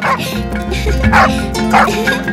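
A dog barking about four times in quick succession over background music.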